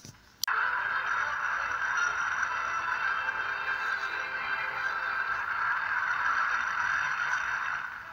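Two sharp clicks at the very start, then a steady, unchanging hiss-like noise in the middle range with a faint high whine, like the background noise of an old broadcast soundtrack.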